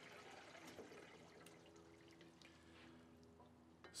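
Very faint trickle and drips of water from the outlet tube into a beaker of water as the flow through the carbon filter is shut off.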